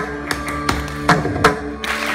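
Mridangam played solo: sharp, ringing strokes about every 0.4 s, the drum's tuned head holding a steady pitch between the hits.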